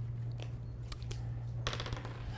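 Dry-erase markers being handled, giving a few sharp clicks and a short clattering rattle near the end. A steady low room hum runs underneath.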